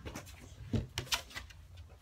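Trading cards and a clear plastic box being handled: a string of short, soft clicks and rustles.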